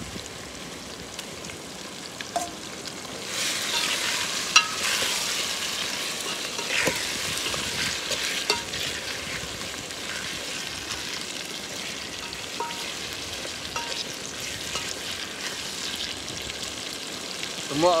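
Raw pork pieces frying in hot oil in a steel pot: a steady sizzling hiss that grows louder about three seconds in, with a metal spoon clinking and scraping against the pot as it is stirred.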